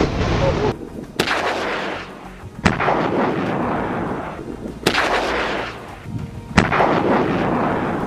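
Heavy weapons fire: four loud blasts about one and a half to two seconds apart, each followed by a rumble that dies away over about a second.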